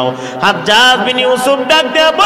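A man's voice chanting a sermon line in a drawn-out, sing-song melody with long held, gliding notes. This is the melodic delivery typical of a Bengali waz preacher. It starts about half a second in, after a brief dip.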